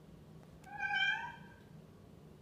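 A single high-pitched animal call lasting about a second, starting about half a second in, its pitch bending slightly upward.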